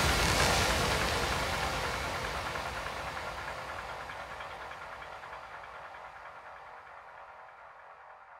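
The end of a psytrance track: the dense tail of electronic sound left by the last hit fades away steadily, growing fainter throughout.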